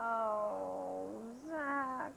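A single person's drawn-out, wordless groan of dismay as a wrong answer is revealed: one long vocal sound that sinks in pitch, then rises again near the end.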